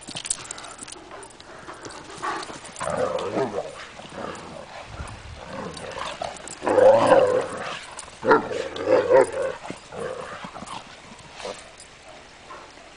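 Two Irish wolfhounds play-fighting, growling in uneven bursts, the two loudest a little past the middle, with scattered clicks and scuffling between them.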